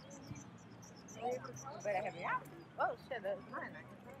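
Faint voices and a short murmur from people close by, over a low steady hum.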